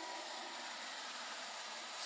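Faint steady hiss of room tone and recording noise, with no distinct event.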